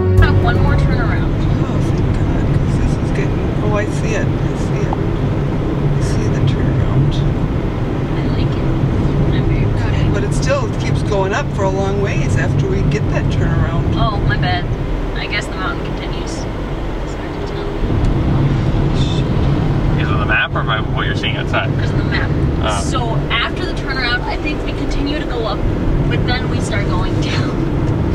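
Hyundai Accent's engine droning steadily under heavy load as the car climbs a steep mountain grade, heard from inside the cabin, with indistinct voices over it.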